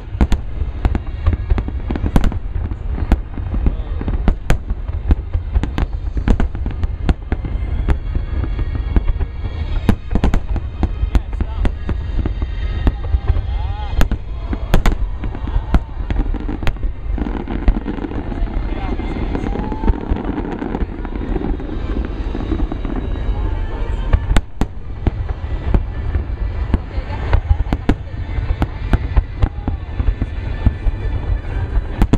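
Aerial fireworks display: a dense, continuous run of shell bursts, sharp bangs coming many to the second over a constant deep rumble, with crowd voices among them.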